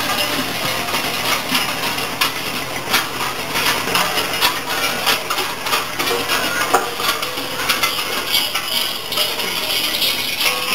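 Dense, continuous metallic clanging and jingling of many bells worn by Perchten as they move in the procession, an irregular clatter of small strikes with no let-up.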